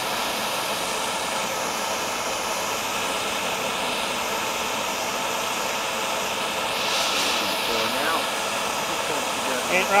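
Handheld gas torch burning with a steady hiss as its flame heats a copper pipe fitting, bringing the joint up to temperature so the solder will flow.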